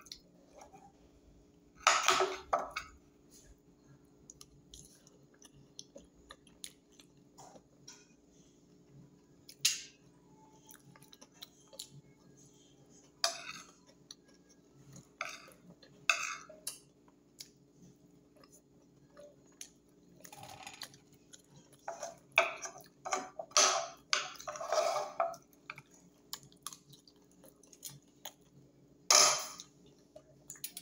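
A person chewing fish and food eaten by hand, in scattered short bouts with a busier stretch near the end, with occasional clinks of a metal spoon against a glass bowl. A faint steady low hum runs underneath.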